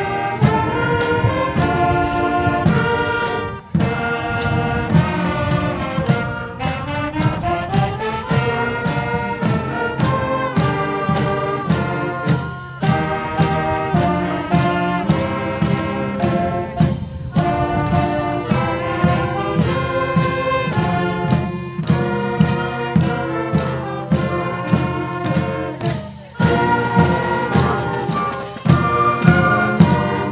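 School concert band playing a processional piece, brass carrying the melody over held chords.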